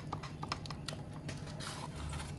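Wooden spatula stirring thick mor kali dough in a stainless steel pan: quick irregular clicks and taps, several a second, over a low steady hum.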